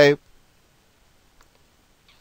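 The tail of a spoken word at the start, then near quiet with faint computer mouse clicks, the clearest about one and a half seconds in, as a web link is clicked.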